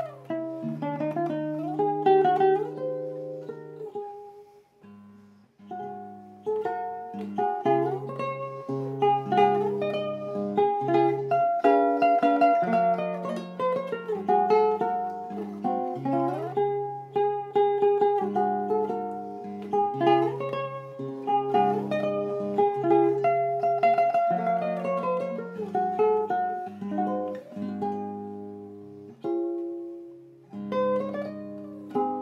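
An 1855 Pierre Marcard guitar played solo, fingerpicked: a plucked melody over lower bass notes, with a brief pause about five seconds in and the notes fading near the end.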